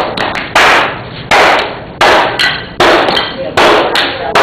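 Repeated hard blows knocking the white ceramic shell mold off a freshly poured bronze casting, about six strikes spaced under a second apart. Each is a sharp crack that trails off briefly.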